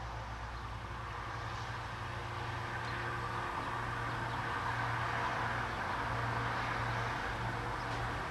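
Steady background noise: a low hum under a hiss that swells a little through the middle and eases near the end.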